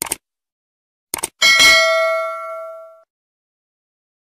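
Subscribe-button sound effect: two short mouse clicks, two more about a second later, then a bright notification-bell ding that rings out and fades over about a second and a half.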